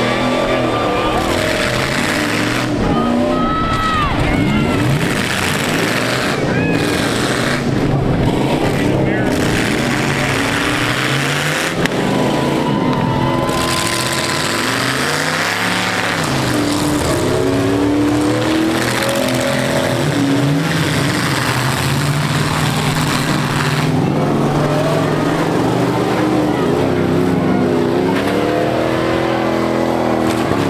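Several demolition-derby truck engines revving up and down at once, over a steady noisy din, with one sharp bang about twelve seconds in.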